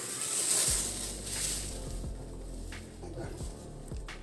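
Thin cellophane film crinkling and rustling as it is pulled off a plastic container of soil, loudest in the first second and a half, then fading to a few faint handling clicks over a low hum.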